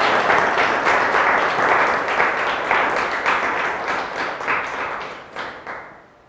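Audience applauding, a dense patter of many hands clapping that thins out and fades over the last few seconds.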